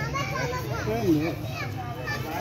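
Children's and adults' voices talking and calling out, over a low steady hum.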